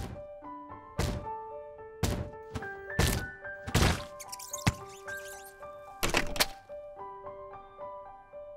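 A cartoon flying eyeball bumping into a closed wooden door over and over: thunks about once a second, stopping about six and a half seconds in. Light plinking keyboard music plays under them.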